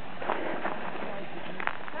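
Hooves of a small flock of sheep trotting on a gravel dirt road, with a herding dog's paws among them: scattered light clicks and scuffs.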